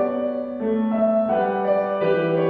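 Grand piano playing a hymn tune, its notes and chords changing every half second or so.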